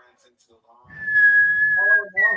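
A person whistling one held note that starts about a second in and sags slightly in pitch, with a voice coming in under it near the end.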